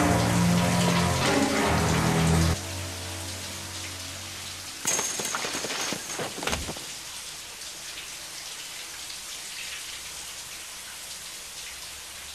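Low string music ends about two and a half seconds in, leaving a shower running steadily. About five seconds in, shower-curtain rings snap off the rod in a quick cluster of sharp clicks, followed a little later by a dull thud.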